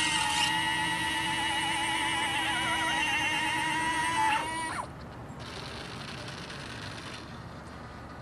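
Electric retractable landing gear of an FMS P-51D Mustang 1450 mm RC model retracting: a steady electric motor whine at several pitches that wavers midway and stops about four and a half seconds in, once the gear is up and the bays are closed.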